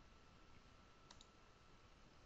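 Near silence: room tone with a faint steady whine, and a single soft mouse click about a second in.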